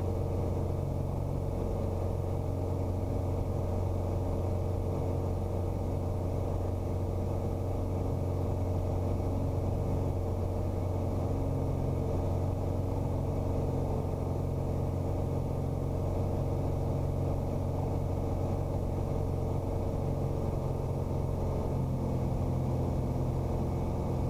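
Piper Arrow's four-cylinder Lycoming engine and propeller droning steadily in flight, a low, even hum.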